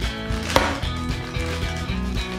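Light background guitar music with an even plucked beat. About half a second in there is one sharp crinkle of a clear plastic bag as a toy minicar is pulled out of it.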